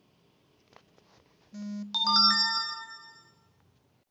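An electronic chime: a short buzzy tone, then a bright ringing chord of several clear tones that fades out over about a second and a half.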